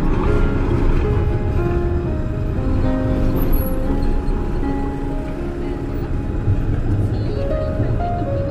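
Slow, relaxing piano music, its notes held and moving step by step, over a low steady rumble of street traffic from a passing tram and car.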